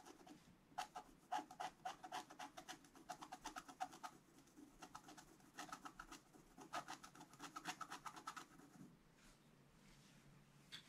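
Wooden stylus scratching the black coating off a scratch-art paper page in quick, short strokes, in several runs with brief pauses between them. The strokes stop about a second before the end.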